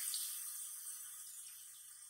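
A soft, steady hiss that slowly fades away.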